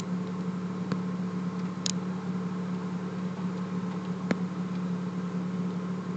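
V6 car engine idling warm at about 740 rpm: a steady hum with a few faint clicks.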